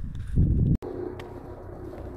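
Low rumble of wind on a phone microphone while walking a dirt road, cut off abruptly just under a second in. Quieter open-air ambience follows, with a faint steady low hum.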